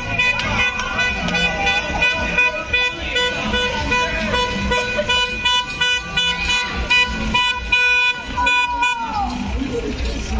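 A horn sounding one long, steady note for about nine seconds, its pitch sagging as it cuts off near the end, over a celebrating crowd shouting.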